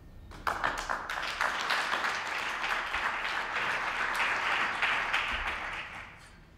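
Small audience applauding, starting about half a second in and dying away near the end.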